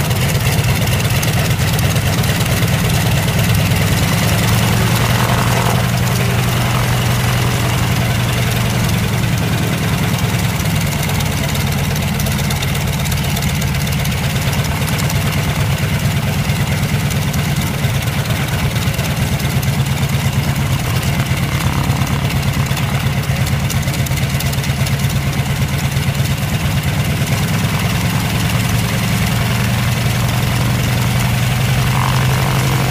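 Radial engine of a 1920s Travel Air biplane idling steadily just after a hand-propped start, with small shifts in speed.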